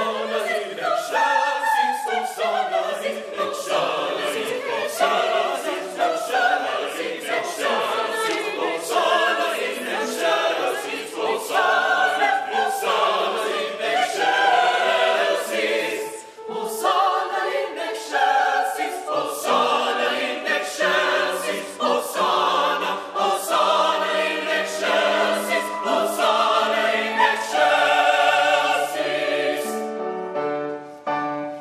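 Mixed choir of women's and men's voices singing together in held, overlapping parts, with a brief break about halfway through.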